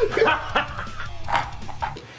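Short, yelp-like laughing cries from a person, several in quick succession.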